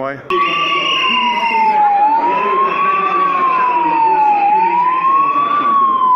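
A siren wailing, its tone sliding slowly up and down about every two and a half seconds. It starts abruptly just after the start and is the loudest sound, with voices underneath.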